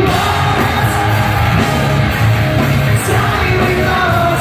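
A punk rock band playing loud live through the venue PA, electric guitars, bass and drums with a singer, heard from among the audience.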